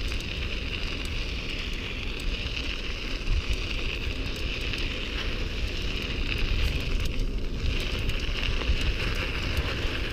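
Riding a bicycle on a paved trail: a steady rumble of wind on the microphone and tyres on the asphalt, with scattered small crackles and clicks and a steady high hiss.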